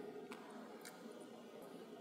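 Quiet room tone with a few faint, sharp clicks spread across the two seconds.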